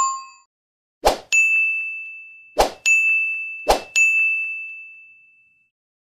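Sound effects for an animated subscribe-and-bell graphic: three short swishes, each followed at once by a bright bell-like ding that rings on and fades. The last ding dies away slowly a little before the end.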